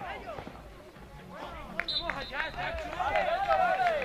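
Several voices talking and calling out over one another at the pitch side during an amateur football match, with a short high-pitched tone about two seconds in.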